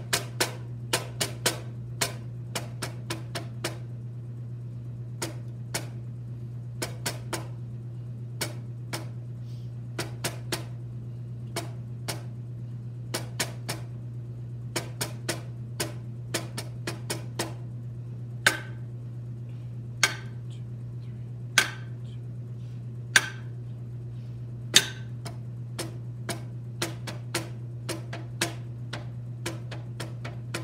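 Wooden drumsticks tapping out a snare drum part: sharp, dry strokes in an uneven rhythm, with a run of five louder strokes about a second and a half apart past the middle. A steady low hum sits underneath.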